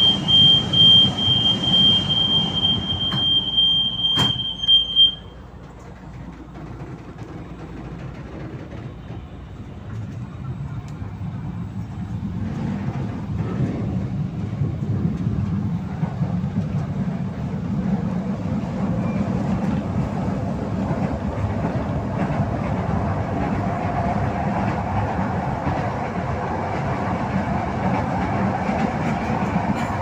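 Rapid high-pitched beeping from a Manila LRT Line 1 train's door warning for about five seconds, ending in a sharp knock as the doors shut. The train then pulls away, its wheel and motor noise building steadily as it gathers speed on the elevated track.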